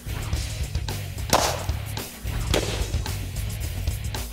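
Background music with a beat, over which two sharp cracks come about a second apart: subsonic .22 rimfire rounds striking aerosol spray-paint cans, each with a short burst of noise as a can is hit.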